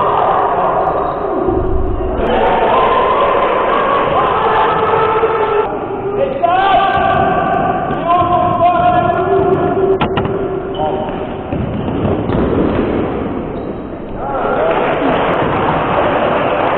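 Voices shouting and calling in a large gym hall during a youth basketball game, with a single sharp knock about ten seconds in.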